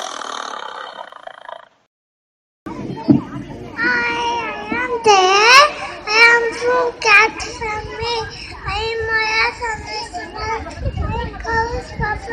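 A short burst of sound, about a second of silence, then a young child's high-pitched voice loudly reciting lines in long, sing-song phrases whose pitch rises and falls.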